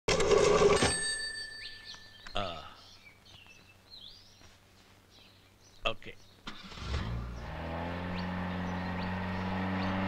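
Faint bird chirps and a couple of sharp clicks, then a car engine starts about seven seconds in and settles into a steady idle.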